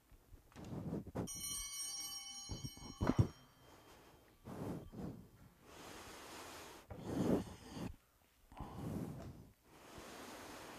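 Sacristy bell rung about a second in, its several high bell tones ringing together for about two seconds before fading. It stands in for an organ's zimbelstern. Around it come soft thumps and breathing or handling noises; the loudest is a thump about three seconds in.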